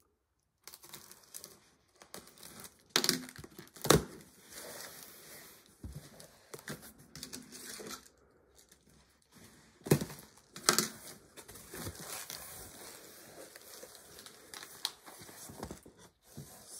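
A sealed cardboard shipping box being opened by hand: packing tape being cut and torn, then cardboard flaps and inserts rubbing and crinkling. A few sharp knocks and rips stand out, the loudest about four seconds in and two more around ten seconds.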